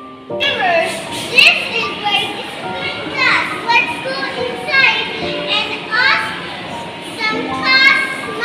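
Young children's voices talking and calling out over background music with held notes.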